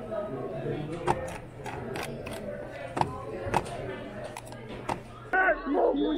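Indoor library room tone: a steady low hum under faint background voices, broken by a handful of sharp clicks and taps. Near the end it cuts to louder voices outdoors.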